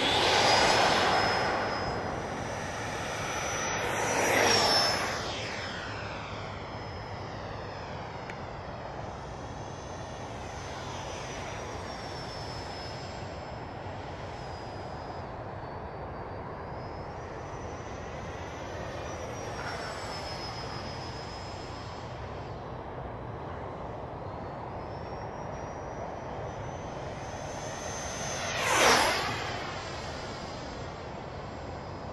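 Electric ducted-fan jet whine from a Freewing F-15 RC model, its high pitch rising and falling with throttle. It is loud as it powers up from the runway, swells on a close pass about four seconds in, and stays fainter while the jet is far off. A quick, loudest pass comes near the end.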